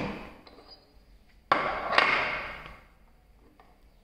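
Glass stopper of a reagent bottle clinking: two sharp knocks about half a second apart, each with a short ringing tail.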